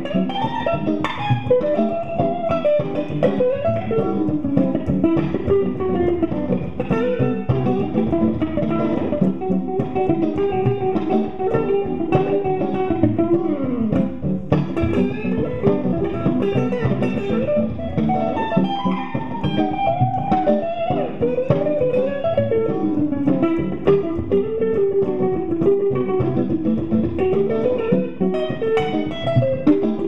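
Fender Stratocaster electric guitar played clean on its neck pickup: a continuous single-note melody with frequent string bends and vibrato.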